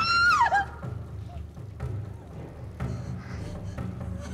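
A young woman's scream sliding down in pitch and breaking off about half a second in, followed by low, quiet, rumbling background music.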